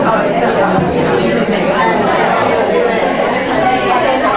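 Many people talking at once in small discussion groups: a steady hubbub of overlapping voices filling the room, with no single voice standing out.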